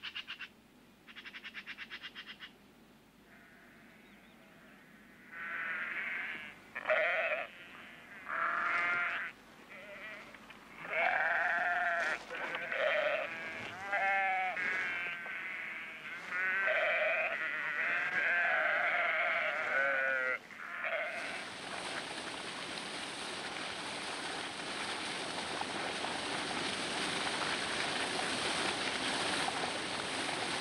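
A flock of sheep bleating, many calls one after another and overlapping. About two-thirds of the way through, the bleating gives way to the steady rush of a fast-flowing torrent of white water.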